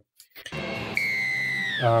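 A moment of silence, then the sound of a rugby league highlights broadcast starting: a steady crowd-noise haze with a single high tone that holds and then glides sharply downward near the end, where a man says "um".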